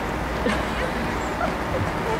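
Steady outdoor background noise with faint voices, and a short high yelp about half a second in.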